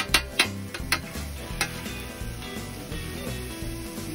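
Onions and mushrooms sizzling on a hot steel Blackstone griddle, with sharp clicks of a metal spatula against the griddle top in the first second and a half. Background music with a steady beat plays underneath.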